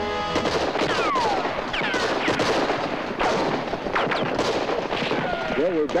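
A sustained volley of film gunfire: many overlapping shots in quick succession, with several falling whines among them, starting about half a second in and thinning out near the end.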